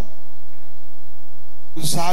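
A steady hum of several evenly spaced held tones with no change in pitch, then a man's voice coming in near the end.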